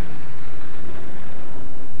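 Grumman F8F Bearcat's radial piston engine droning steadily as the fighter passes low and fast, heard through the hiss and hum of an old film soundtrack.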